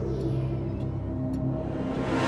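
Low sustained drone of a horror film score, steady held tones over a deep rumble, with a couple of faint ticks in the middle.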